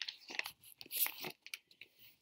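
Rustling and scraping of a paperback picture book being handled and its pages turned: a string of short, irregular scuffs over the first second and a half.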